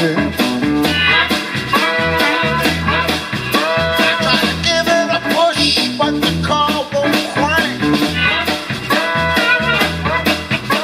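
Live blues-rock band playing an instrumental stretch: electric guitar, electric bass and drums on a steady beat, with a bending lead line over them.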